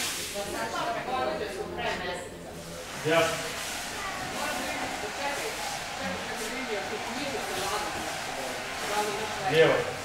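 Indistinct speech from people in a large hall, with scattered voices over a steady low background.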